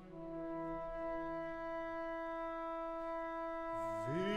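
Flute and oboe holding long, steady notes in a chamber orchestra, a new held note entering just after the start over quieter low sustained tones.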